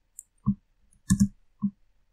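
Computer mouse and keyboard clicks: a handful of short, separate clicks over two seconds as a paste is chosen from a menu and the Enter key is pressed.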